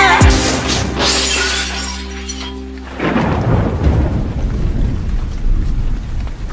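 Car-crash sound effect as the song breaks off: a sudden impact with glass shattering, fading over about two seconds over a held music chord. About three seconds in, a rumble like thunder and steady rain noise take over.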